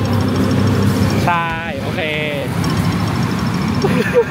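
Loud road traffic, cars and motorcycles passing on a busy street, making a steady rumble and hiss.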